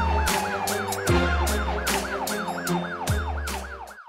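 Television title music with a fast siren-like warble, about four rises and falls a second, over drum hits and bass, with a slowly falling tone in the first second. The music cuts off abruptly at the end.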